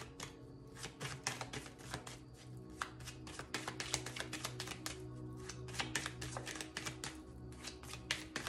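A deck of tarot cards being shuffled by hand, a quick unbroken run of soft card flicks and slaps, over steady background music.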